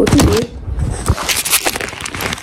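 Handling noise from a phone being picked up and repositioned: a run of irregular clicks, rubs and crackles as fingers move over the phone and its microphone.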